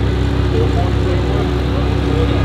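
Two modified cars idling at a start line, an Infiniti Q50 with its VR30 twin-turbo V6 and a BMW 440 with its B58 turbo straight-six: a steady, even engine sound with no revving.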